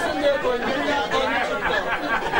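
Several people talking at once: audience chatter in a large hall.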